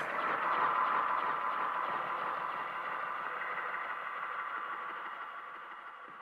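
Outro of a progressive psytrance track: a noisy synth wash with a few faint steady tones, left alone after the beat has stopped and fading slowly out.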